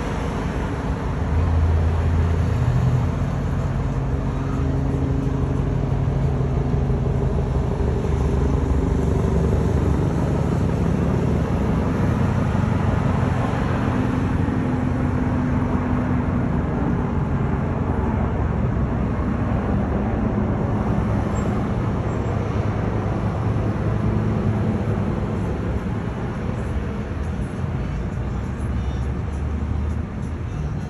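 City street traffic: cars passing steadily on a multi-lane road below, a continuous wash of engine and tyre noise with a low engine hum that is strongest a couple of seconds in.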